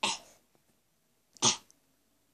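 Two short coughs from a boy, one right at the start and a sharper one about one and a half seconds in.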